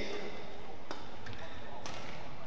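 Two sharp hits of a badminton racket on a shuttlecock, about a second apart, during a rally, over the steady background noise of an indoor sports hall.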